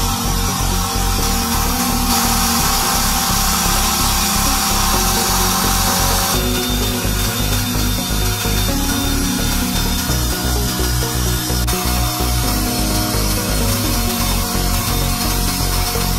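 A drill spinning an abrasive grinding stone against the metal body of a padlock, grinding it down, with background music with a steady beat.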